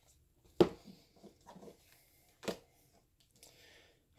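Tarot card being turned over and laid down on a cloth-covered table: faint rustling of the card, then a single sharp tap as it lands about two and a half seconds in.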